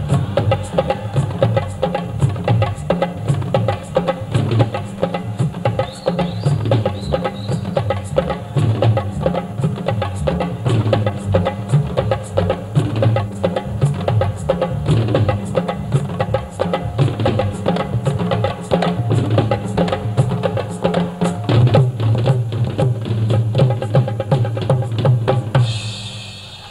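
Live band music driven by a drum kit playing a fast, steady beat over a strong bass line. The piece ends right at the close.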